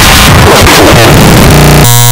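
Extremely loud, clipped, heavily distorted electronic cacophony: a dense wall of noise and music-like sound that turns into a harsh buzzing tone about three-quarters of the way through.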